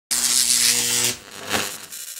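Logo intro sound effect: a loud buzzy hiss over a low steady hum for about a second, cutting off abruptly, then a fainter swell.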